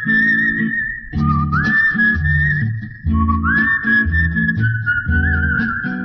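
Instrumental interlude of a Telugu film-song backing track: a whistled melody held high, sliding up from a lower note twice and wavering near the end, over a plucked-string accompaniment with a steady bass beat.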